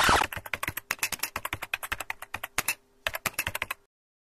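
Keyboard typing sound effect: rapid key clicks in two runs with a short pause between, keeping time with text typed out on screen. It opens with a brief loud burst of noise.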